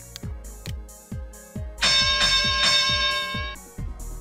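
Background electronic music with a steady kick-drum beat; a loud held chord comes in about two seconds in and cuts off about a second and a half later.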